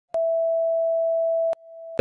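Colour-bar test tone: a single steady, mid-pitched beep that starts with a click just after the start and cuts off with a click about a second and a half in, then returns faintly and swells until the picture cuts.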